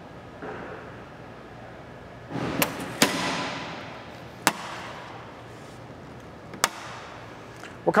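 The hinged lid of a travel trailer's rear-bumper storage compartment being shut. After a short rustle there is one hard slam about three seconds in that rings briefly, followed by two single sharp clicks spaced a couple of seconds apart.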